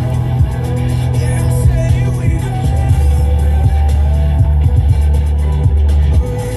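Music with a heavy bass line, playing from a car's stereo and heard inside the cabin.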